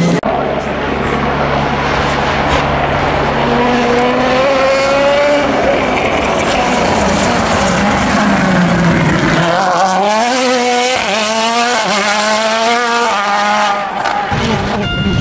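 Turbocharged World Rally Car engines at full throttle on an asphalt stage, the pitch climbing and dropping back with each gear change. From about ten seconds in, one car pulls away through a rapid series of upshifts.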